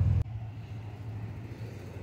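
Low, engine-like rumble with a fine regular pulse that cuts off abruptly just after the start, leaving a fainter steady low hum.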